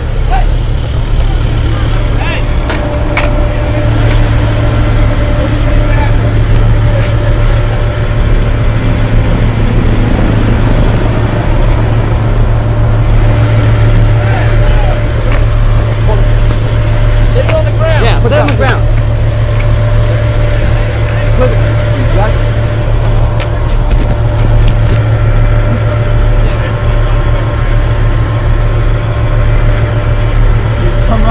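Vehicle engine running steadily close by: a loud, constant low drone with a thin steady hum above it, and brief distant voices around the middle.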